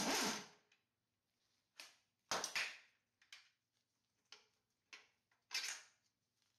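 A steady whirring noise cuts off about half a second in, followed by a handful of short metallic clicks and clinks as a socket and the inner tie rod end bolt are worked loose and handled at a Mustang Cobra IRS spindle.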